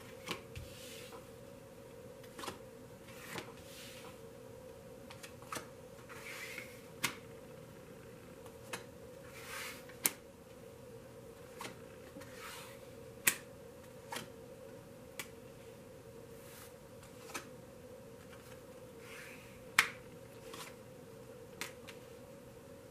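Tarot cards dealt one at a time onto a cloth-covered table: irregular sharp clicks as cards are flipped and set down, with soft swishes of cards sliding into place. A steady faint hum runs underneath.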